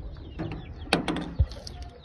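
A quick run of sharp clicks about a second in, then a single low knock: a bent-nail latch on a wooden pigeon-loft door being turned and the wire-mesh door handled.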